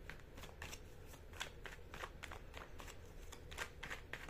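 A deck of tarot cards being shuffled by hand, giving a quiet run of irregular card clicks and flicks, a few each second.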